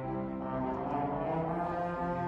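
Three children playing trombones together, holding long low notes, with a change to a new note about one and a half seconds in.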